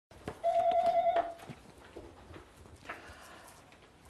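A brief high-pitched squeak lasting under a second, steady with a slight waver and a drop in pitch as it ends. It is followed by a few light clicks and knocks of handling at the desk.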